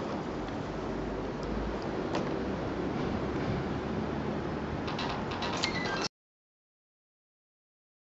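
Steady rumbling hiss of wind buffeting a camera's built-in microphone, with a few sharp clicks and a burst of crackles near the end. It cuts off suddenly to dead silence about six seconds in.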